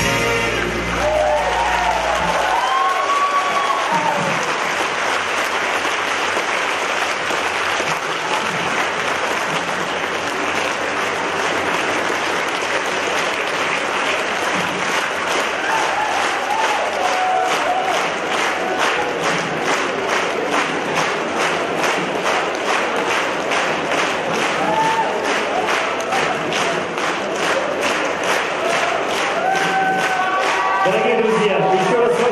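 Concert audience applauding and cheering as a song ends, with the last notes of the band dying away in the first couple of seconds. About halfway through, the applause falls into rhythmic clapping in unison, with scattered shouts over it.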